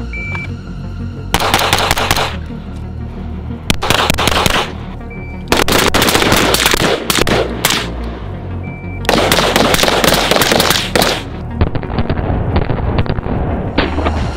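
AR-style carbines firing fast strings of shots, four dense bursts followed by a lighter run of shots near the end. Three short high beeps, the start signal of a shot timer, each come before a string. Background music with a steady bass plays throughout.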